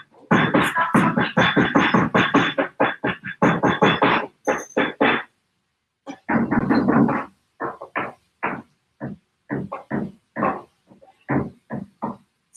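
Knife chopping garlic on a cutting board: a fast, even run of chops, about five a second, then after a short pause slower, irregular chops.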